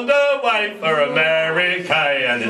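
Male voices singing a sea shanty unaccompanied, with long held, sliding notes.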